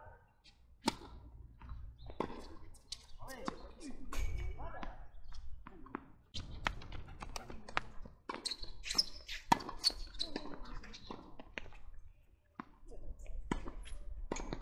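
Tennis balls struck by rackets and bouncing on a hard court in a doubles match: a serve popping off the strings about a second in, then a run of sharp hits and bounces through the rallies.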